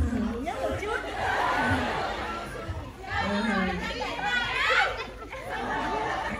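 Several voices talking at once in overlapping chatter, with no single clear speaker.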